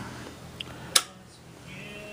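A single sharp switch click about a second in: the bench power supply being switched off.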